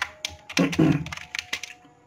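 Computer keyboard keys clicking in a quick run of keystrokes as text is typed and backspaced.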